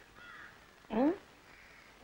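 A man's short, rising closed-mouth "hm?" about a second in. Faint crow caws sound in the background near the start.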